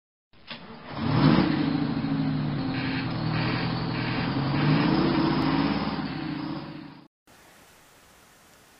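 A lorry engine pulling away and accelerating. Its pitch climbs about a second in and climbs again midway, then the sound fades out shortly before the end.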